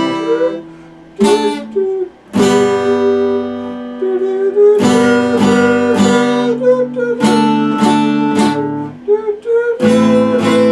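Epiphone acoustic guitar strummed in chords. Most chords are struck about a second apart and left to ring, one for about two seconds, with a quicker run of strums about seven to eight and a half seconds in.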